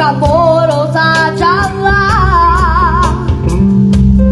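A boy singing into a microphone with a wide vibrato, backed by a live band of keyboards, guitar, bass line and drum kit. His sung phrase ends about three seconds in while the band plays on.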